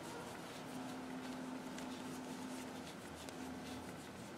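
Faint rubbing and light ticks of a crochet hook drawing yarn through stitches, over a faint steady hum.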